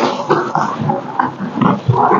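A small blade cutting and scraping through packing tape on a cardboard parcel, with the cardboard rustling as it is handled: an irregular run of short scrapes.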